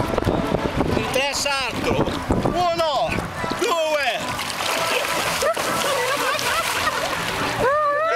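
A man thrown off others' shoulders into seawater hits with a splash, followed by several seconds of churning, sloshing water in the second half, with men shouting before it.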